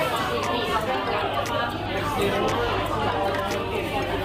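Restaurant chatter: many overlapping voices of diners talking at once, with a steady low hum underneath.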